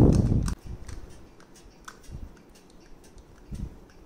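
Glass oil spray bottle being pumped over an air fryer's basket: a dull knock at the start, then scattered faint clicks and short sprays.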